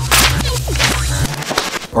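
A sheet of printer paper being hacked and torn roughly with a small knife: a quick run of ripping and crinkling rasps that dies away after about a second and a half. Background music with a steady bass underneath, cutting out a little past a second in.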